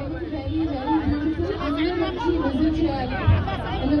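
A woman speaking into a microphone, her voice carried over a dense crowd's chatter.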